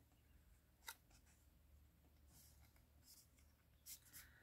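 Near silence with faint handling of cardstock: a couple of small clicks and soft rustles as two glued paper pieces are pressed together by hand.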